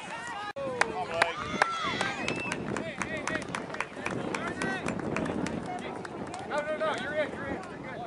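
Outdoor voices of spectators and players talking and calling across the field, with many sharp clicks scattered throughout.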